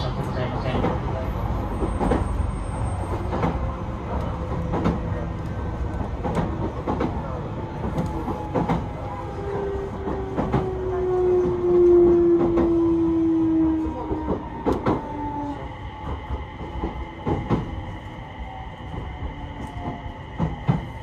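Onboard sound of a JR East E721 series electric train slowing down: the traction motor whine slides down in pitch as it brakes, over repeated rail-joint clicks. A steady high tone joins near the end.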